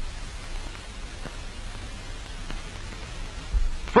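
Steady hiss and crackle of an old film soundtrack, with a low hum underneath and a couple of faint clicks.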